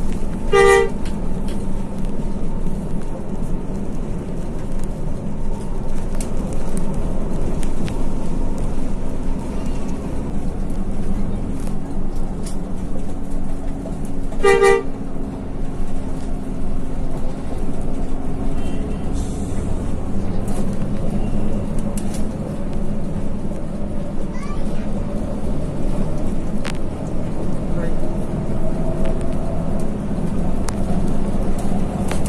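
Intercity bus horn giving two short blasts, about a second in and again about halfway through, over the steady drone of the bus's engine and road noise heard inside the cab. Near the end the engine note rises as the bus speeds up beside a truck.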